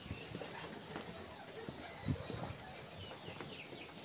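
Faint footsteps: irregular, light knocks of someone walking.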